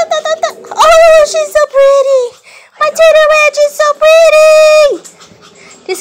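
A Pomeranian giving excited, high-pitched vocal cries while spinning: a few quick yips, then several long, drawn-out howls, the last one falling in pitch near the end.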